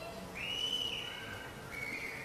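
Two faint, high, steady whistle-like tones, one after the other, the second a little lower in pitch, over a low steady hum.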